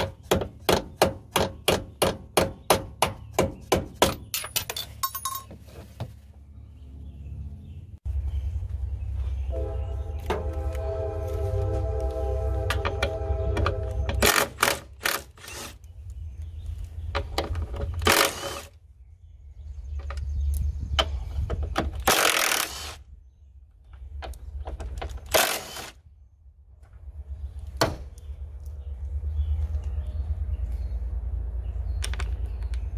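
Ratchet wrench clicking in quick, even strokes, about three or four a second, for the first five seconds while turning bolts at a car door's check strap and hinge. Shorter runs of ratcheting and clatter follow later, over a low steady rumble. A steady droning tone with several pitches sounds for about five seconds near the middle.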